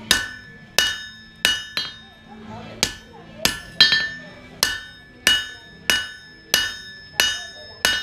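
Hand hammer striking a red-hot 1080 high-carbon steel bar on an anvil: about a dozen hard, evenly paced blows, roughly one and a half a second, each with a brief metallic ring. The blows are flattening the handle section so its edges don't bulge into a "fish mouth".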